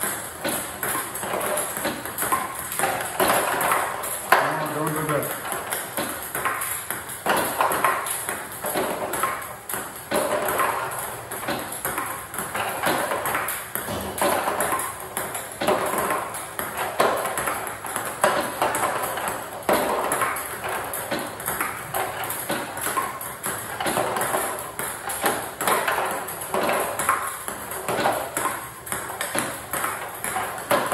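Table tennis drill: a celluloid-type ping-pong ball repeatedly clicking off a rubber-faced paddle and bouncing on the table as topspin returns are played, a quick run of sharp ticks all the way through.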